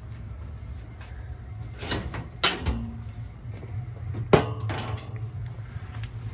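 Sharp clanks and knocks of a boiler's sheet-metal front panel being handled and taken off, loudest about two and a half and four and a half seconds in, over a steady low hum.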